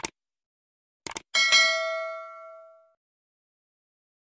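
Subscribe-button animation sound effects: a mouse click, a quick double click about a second later, then a bright bell ding that rings out and fades over about a second and a half.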